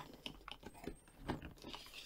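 Faint scraping and light taps as a bamboo watch box is worked out of its close-fitting cardboard packaging by hand.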